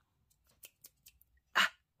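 Near silence, broken by a few faint ticks as paper card is handled, then one short vocal sound about a second and a half in.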